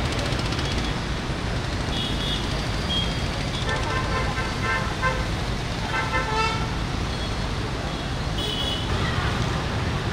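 Traffic jam: a steady rumble of idling and creeping cars, auto-rickshaws and motorbikes, with vehicle horns honking several times, the longest stretch of honking about four to five seconds in.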